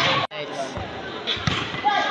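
Spectators' voices at a volleyball game, with a volleyball thudding once about a second and a half in. The sound cuts out for an instant just after the start.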